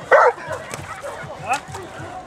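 A dog barks once, loudly, just after the start, then gives a short rising yelp about a second and a half in.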